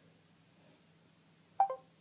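Mostly quiet room tone, then near the end a short falling electronic chime from the Samsung Android phone's voice-input screen, the tone that marks it has stopped listening and begun processing the spoken question.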